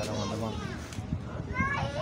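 Background voices: people chattering, with high-pitched children's voices calling out near the end.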